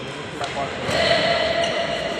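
Badminton rally in a large sports hall: a racket strikes a shuttlecock with a sharp click about half a second in, with players' voices and court noise behind it.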